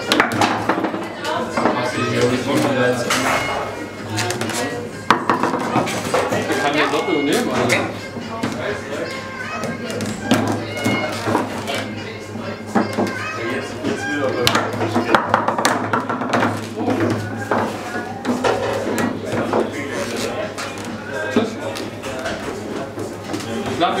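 Foosball table in play: sharp, irregular clacks of the ball being struck by the figures and hitting the table, over background music and indistinct voices.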